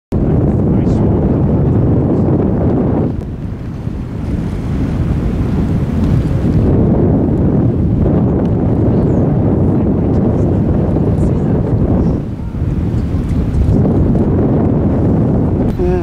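Wind buffeting the microphone: a loud, steady rumble that eases off briefly three times, about three, eight and twelve seconds in.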